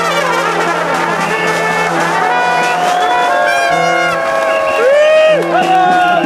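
Street brass band playing, with trumpets and trombones over a snare drum. Notes bend and slide in the second half.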